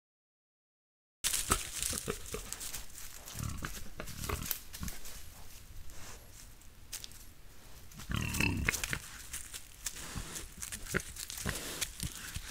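Wild boars rooting and moving through dry leaf litter close by, with rustling and crackling and a few low grunts, the strongest about eight seconds in. The sound starts about a second in.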